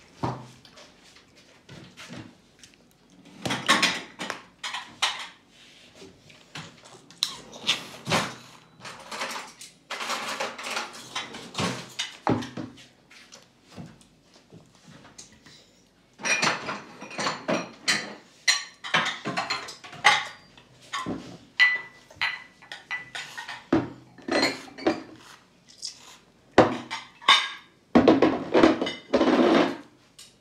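Spoons and tableware clinking and scraping against bowls, with irregular knocks of dishes on high-chair trays, in short clusters with brief quiet gaps.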